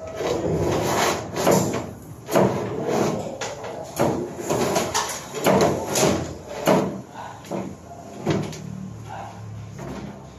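Bundles of electrical wire being pulled and handled overhead, giving a string of short rustling, scraping and knocking noises, about one or two a second.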